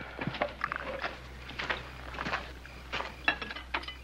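Scattered light clinks and knocks of plates and cutlery, with a few footsteps, over a steady low hum.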